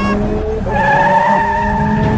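Cartoon sound effect of car tyres squealing as a car speeds away, a steady held screech that starts about half a second in.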